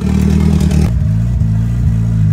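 Turbocharged VW Voyage engine idling through a straight-through exhaust, a steady low drone. About a second in it turns more muffled, heard from inside the car's cabin.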